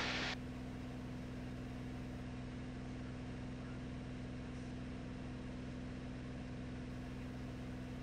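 Steady low drone of the Beechcraft A36 Bonanza's piston engine and propeller in a full-power climb. A light hiss drops away about a third of a second in.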